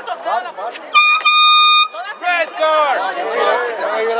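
An air horn gives one steady blast, about a second in and lasting just under a second, among spectators talking and calling.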